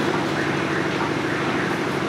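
Steady room noise of a lecture hall with no speech: an even hum and hiss.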